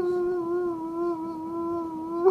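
A voice humming one long held note with a slight waver.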